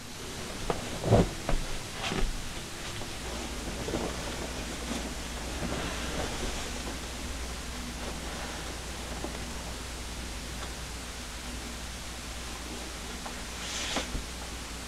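Fabric rustling as a shirt is buttoned and clothes are put on, over a steady low hum of room noise that sets in a few seconds in. Early on there are a few louder rustles and knocks.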